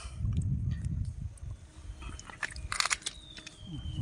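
Wet crunching and squelching of fingers working in wet sand and shell grit as a hooked sea worm is pulled from its burrow. There is a low rumble in the first second and a half, then scattered crackles and a sharper click near the end. A faint high whistle falls slowly in pitch over the last second.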